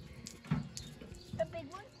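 Fairly quiet, with faint, brief fragments of a voice in the background and a soft knock about half a second in.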